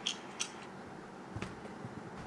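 Three short, light clicks over faint room tone: fingers tapping on and handling a smartphone's touchscreen.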